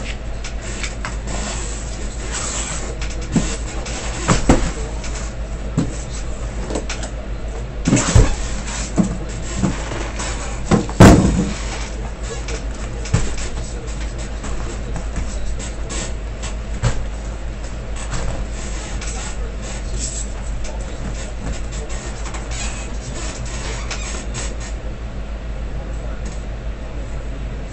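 A cardboard shipping case being opened by hand and the sealed hobby boxes inside pulled out and stacked: rustling and scraping of cardboard with several knocks as boxes are set down, the loudest about eleven seconds in, over a steady low hum.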